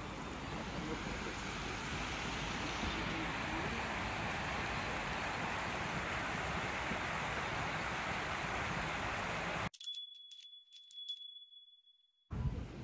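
Steady rushing of shallow river water flowing over a stony bed. About ten seconds in it cuts off abruptly to a short logo jingle of a few bright, ringing chime notes that fade away.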